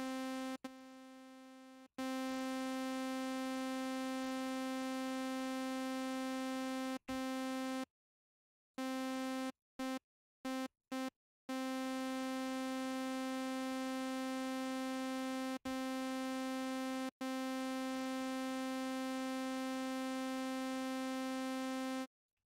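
AudioRealism ReDominator software synthesizer playing one bright, buzzy note at the same pitch over and over, held for varying lengths. A few short stabs come around the middle, and a long held note runs near the end. Each note stays at a steady level while held and stops abruptly, as its envelope's decay setting is being worked out.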